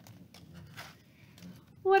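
A picture book's paper page being turned: faint clicks and a brief soft rustle, then a woman starts speaking in a high-pitched character voice near the end.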